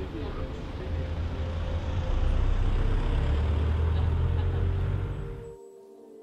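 Street traffic: a steady low rumble of passing vehicles, louder from about two seconds in, that cuts off abruptly just before the end, leaving faint background music.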